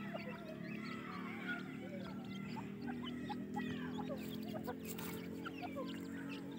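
Grey francolin chicks peeping while they forage, many short high cheeps in quick succession, over a steady low hum.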